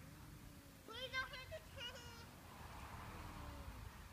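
Two brief high-pitched voice sounds, about a second and two seconds in, over a faint low background rumble.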